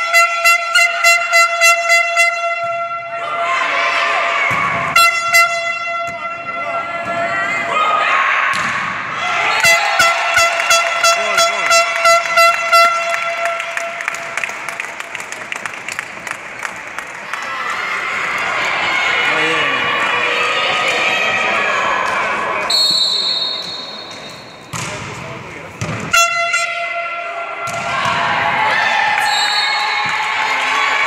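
A fans' air horn sounding one steady pitch, blown in two runs of rapid short blasts, about four a second, plus a few longer blasts, over shouting and cheering from the crowd in a large echoing hall. A short high whistle blast sounds a little past the middle.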